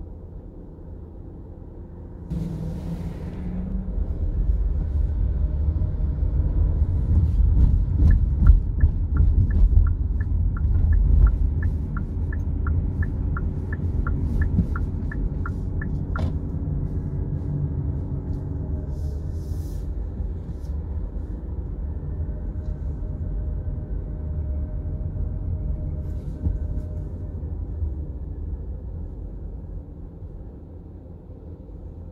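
Low road and engine rumble inside a car's cabin, building as the car pulls away from a stop and then holding steady. For several seconds in the middle, a turn-signal relay ticks evenly, about twice a second, ending in a sharper click.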